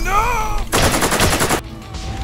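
A burst of rapid automatic-rifle fire, about ten shots a second, that lasts about a second and cuts off abruptly. It comes just after a high, wavering yell.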